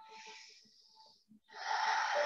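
A woman breathing audibly through the microphone: a faint breath, then a louder, longer one starting about one and a half seconds in.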